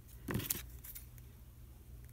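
Metal scissors handled and snipping small pieces of cardboard: one short clink about a third of a second in, then a few faint clicks.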